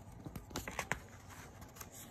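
A picture book's paper page being turned by hand: a faint rustle with a few light taps in the first second.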